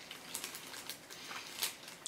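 Faint, scattered little clicks and soft mouth noises of someone chewing a bite of chocolate snack cake, with light handling of the cake in the fingers.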